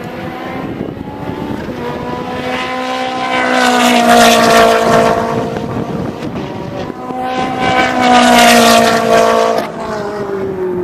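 Sports cars passing at speed on a race circuit, one after another: high-revving engine notes swell loud about three to four seconds in and again near the end, where the second drops away sharply.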